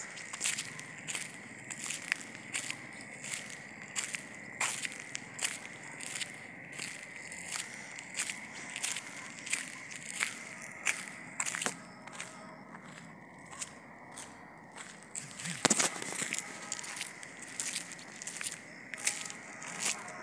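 Footsteps of a person walking at a steady pace, about two steps a second, over a steady thin high tone. A short hummed "mm" near the end.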